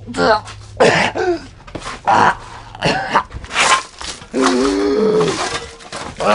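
A person's voice making short wordless vocal sounds, then one drawn-out moan about four and a half seconds in.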